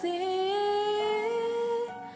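A woman's voice holding one long sung note that drifts slowly upward, with a small step up about a second in, over a faint backing track. It fades near the end.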